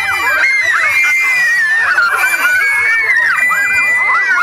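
A crowd of young children shrieking and shouting at once, many high voices overlapping without a break.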